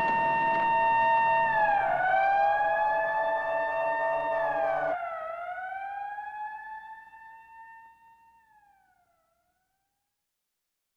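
Siren-like wailing tone in a sample-based experimental electronic track. It holds a pitch, dips and swings back up several times, and a pulsing lower layer beneath it cuts off suddenly about halfway through. The tone then fades away to silence near the end.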